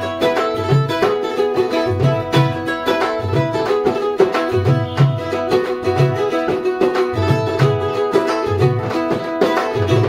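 A ukulele played over a hand-played dhol, with the drum's deep strokes keeping a steady rhythm under the string notes.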